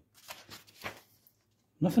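Pages of a hardback book being turned by hand: a few faint, short paper rustles within the first second.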